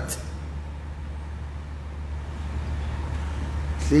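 Steady low hum with an even rumbling background noise, swelling slightly toward the end.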